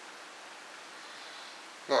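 Room tone: a steady faint hiss with nothing else happening, and a man's voice starting right at the end.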